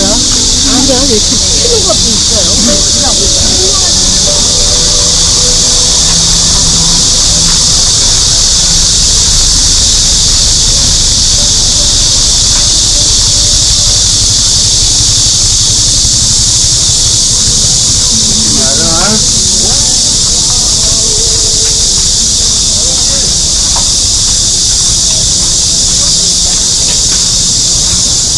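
Steady, high-pitched drone of a cicada chorus, unbroken throughout, over a low street rumble, with snatches of passers-by talking near the start and again about two-thirds of the way through.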